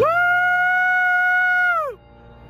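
A man howling like a wolf: one long high call that slides up, holds steady and drops away at the end.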